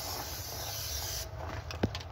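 Aerosol can of Fluid Film undercoating spraying in a steady hiss that stops a little over a second in, followed by a few faint clicks.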